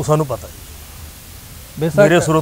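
A man's conversational speech: a few words, then a pause of about a second and a half holding only a steady, faint hiss, then speech again near the end.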